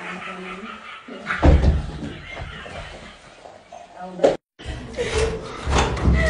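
People's voices with one heavy thump about a second and a half in. The sound drops out for a moment about four seconds in, then voices go on.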